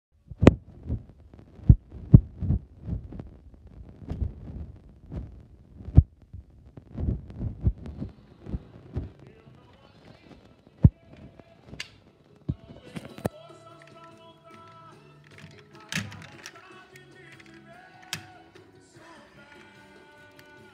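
Irregular knocks and thumps of a small die-cast model car being handled and moved about on a wooden desk, several a second through the first half. About twelve seconds in, faint music with a melody starts, broken by a few sharp clicks.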